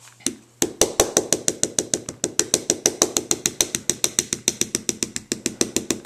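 A stamp being inked with rapid light taps against an ink pad, about seven taps a second, starting just under a second in. Several light taps like this spread the ink evenly over the stamp.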